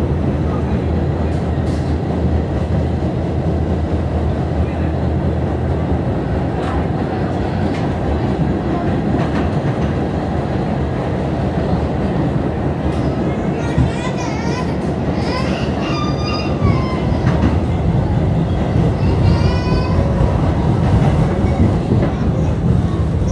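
New York City subway N train heard from inside the car while running: a loud, steady rumble of wheels on the rails with occasional clacks, and brief wavering high tones in the second half.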